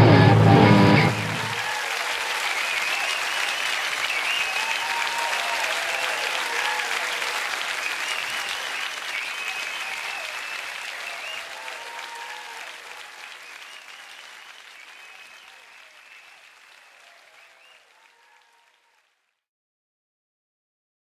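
Live band's final chord cuts off about a second in, then the audience applauds with scattered cheering voices, gradually fading out.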